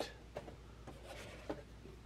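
Faint rubbing and rustling of a cardboard Funko Pop box sliding out of a cardboard shipping carton, with two light knocks, one near the start and one about a second and a half in.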